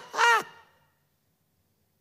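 A man's voice speaking for about half a second through a microphone, then cutting to dead silence.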